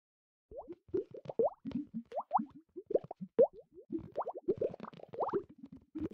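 A quick, irregular string of water-drop plop sound effects, each a short blip rising in pitch, several a second, starting about half a second in.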